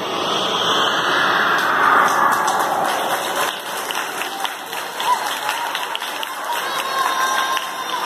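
Audience of schoolchildren applauding: a dense wash of clapping that is loudest about two seconds in, then thins into separate claps.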